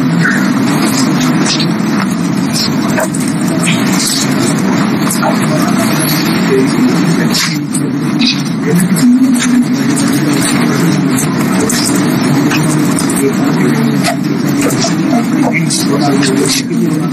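Classroom hubbub: many students talking at once in low voices, a steady din with no single clear speaker, broken by scattered short clicks and knocks.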